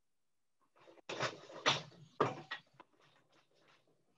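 Wooden four-shaft loom being worked by hand: a burst of knocking and clattering about a second in, with two louder knocks near the middle, then fainter clicks and rustles.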